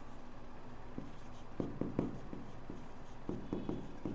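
Faint, irregular taps and short scratches of a pen writing by hand on a board.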